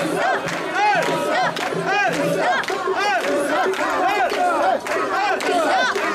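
Mikoshi bearers chanting in unison as they carry the portable shrine, many voices shouting a rhythmic call about twice a second.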